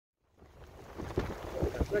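Wind buffeting the microphone over a steady low rumble, fading in about a third of a second in and growing gusty.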